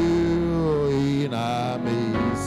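A man's voice singing a slow worship chorus through a microphone, holding long notes that slide gently down, over sustained musical accompaniment.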